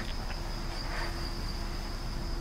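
Crickets trilling steadily in the background. A brief click comes right at the start.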